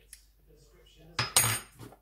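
A metal teaspoon set down with a clatter and a brief metallic ring, about a second and a quarter in, followed by a small tick.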